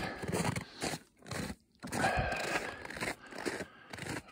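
Footsteps crunching in packed snow, irregular, with a short pause between them partway through.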